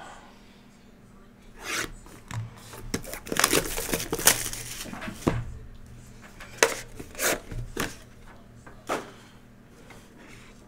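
A cardboard trading-card hobby box being handled and opened: rustling and sliding of the packaging with a series of light knocks and taps, busiest in the middle.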